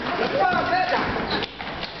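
Voices talking and calling out, with a few sharp knocks of feet stamping on the stage in the second half.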